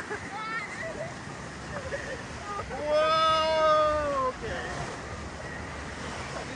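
Whitewater river rapids rushing around a ride raft. About three seconds in, a rider lets out one long held shout lasting about a second and a half.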